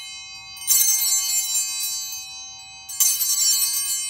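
Altar bells shaken twice, about a second in and again near three seconds, each a short burst of bright ringing that then fades. They are the bells rung at the elevation of the chalice after the consecration.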